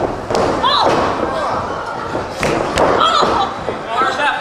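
Three sharp thuds of wrestlers' impacts on the wrestling ring, one near the start and two close together past the middle, among shouting voices.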